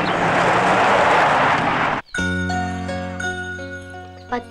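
A car pulling away fast over a dirt road: a loud rush of noise for about two seconds. It cuts off abruptly and film music takes over, with long held notes and a light chiming.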